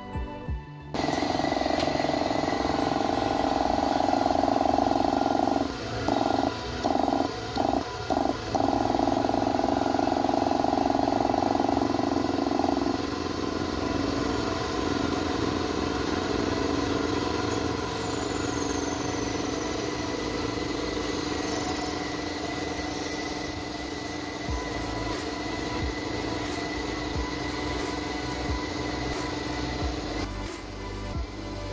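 Belt-driven air compressor running: an electric motor turning the piston pump through a V-belt, a steady hum that starts abruptly about a second in, breaks off briefly several times around six to eight seconds in, and runs a little quieter after about thirteen seconds. Background music plays underneath.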